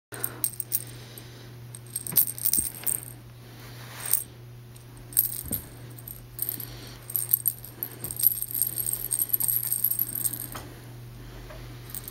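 Cat wand toy jingling and rattling in repeated bursts as a kitten bats and wrestles with it, with small knocks in between.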